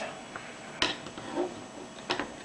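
Multimeter test probe tips tapping on a circuit board's solder points. There is one sharp click a little under a second in and a softer tap later, over a low steady background.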